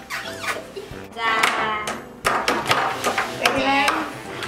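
A high-pitched voice speaking over background music.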